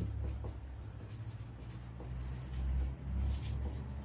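A marker pen writing on a paper pattern piece: a run of short scratching strokes as the tip forms letters, over a steady low hum.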